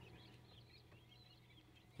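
Young quail chicks in a brooder peeping faintly, many small scattered chirps, over a faint steady low hum.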